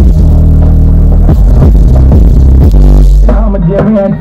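Loud bass-heavy electronic DJ music playing through BRC subwoofer cabinets in a 'dhakka bass' sound test: deep bass notes held for about three seconds, then sharp drum hits near the end.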